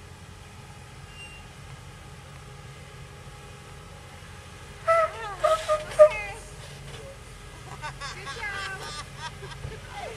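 A Land Rover's engine running at low speed as it crawls down a slickrock slope, a steady low drone. People's voices call out loudly about five seconds in and again, more quietly, near the end.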